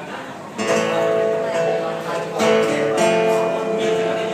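Acoustic guitar strumming the opening chords of a song, coming in suddenly about half a second in, with fresh strums every second or so.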